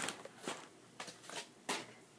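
Soft handling noises: about five short rustles and light knocks spread through two seconds as things are moved about by hand.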